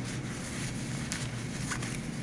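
Faint rustling of cotton fabric being handled and pulled through an opening as a lined bag is turned right side out, with a few brief soft swishes over steady room hiss.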